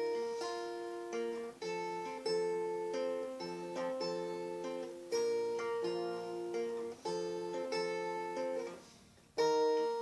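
Acoustic guitar fingerpicked: a picking pattern of single ringing notes over G, D and G7 chords. The playing breaks off briefly a little before the end, then resumes.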